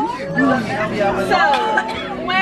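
Several people chatting at once, over background music.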